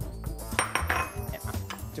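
White ceramic bowls and plates clinking as they are shifted around on a stone countertop, with a cluster of sharp clinks about half a second to a second in. Background music plays throughout.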